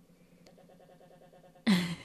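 Audio of a video clip played back at 10% speed in an editor, time-stretched into a faint, low, stuttering drone with a rapid even pulse; it sounds poor. A woman's voice cuts in near the end.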